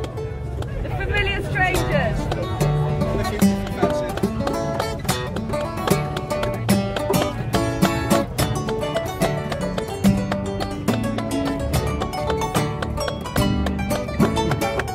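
Steel-string acoustic guitar playing a brisk instrumental riff, with sharp rhythmic picked or strummed notes over moving bass notes.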